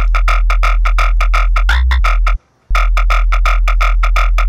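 Serum synth bass patch in Belgian jump-up drum and bass style playing a short looped riff with no drums: a deep sub note under fast, evenly pulsing buzz, gliding up to a higher note near the end of each pass in mono mode. The riff plays twice, with a brief silence between.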